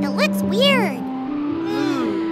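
Cartoon voices giving short wordless exclamations that swoop up and fall, about half a second in and again near the end, over background music with long held notes.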